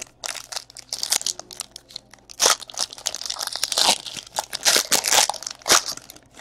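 Foil trading-card pack wrapper being torn open and crumpled by hand: a dense, continuous crinkling crackle, with several louder crackles about halfway through and again near the end.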